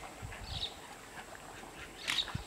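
A short quacking bird call about half a second in, over open-air ambience with a few soft low thumps.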